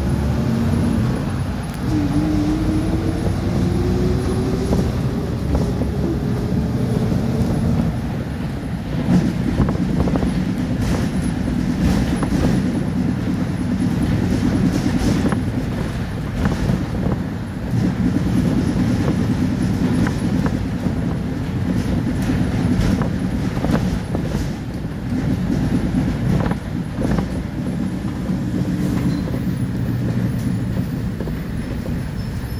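City bus interior on the move: a steady low engine and road rumble, with a whine rising in pitch over the first few seconds as the bus gathers speed. From about a third of the way in, the body and fittings rattle and knock repeatedly over the road.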